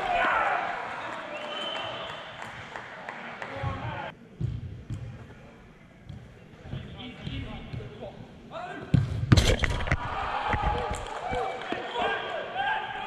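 Indoor soccer play in a large hall: indistinct players' shouts and the thuds of a ball being kicked on artificial turf. A sharp, loud ball strike comes about nine seconds in, followed by more shouting.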